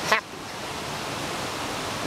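Creek water rushing steadily, an even hiss with no rhythm or change.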